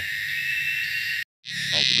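Cicada (tonggeret) calling loudly: a steady high buzz that breaks off for a moment a little past a second in, then comes back as a pulsing call of two or three pulses a second.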